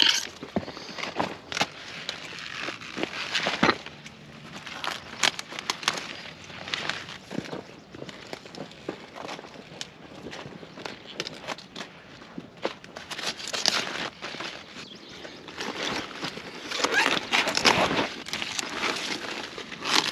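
Broccoli being harvested by hand: leaves rustling and stems crackling and snapping as heads are cut with a knife. The sound comes in irregular crackly bursts, with louder clusters about two-thirds of the way in and near the end.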